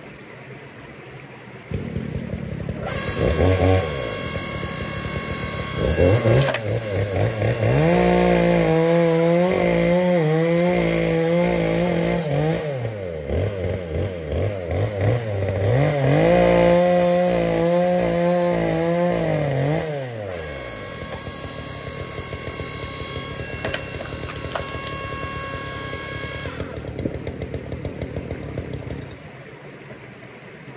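Forest Master electric log splitter running. It starts about two seconds in and shuts off near the end, with a high whine at times. Twice, for about four seconds each, a deeper drone rises, holds and falls away as the ram works a log.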